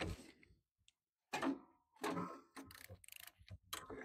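Socket ratchet clicking in short runs as cylinder head bolts are loosened on a small overhead-valve engine, with a run of quick ticks in the second half.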